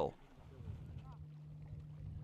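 Faint outdoor background noise with a low, steady hum.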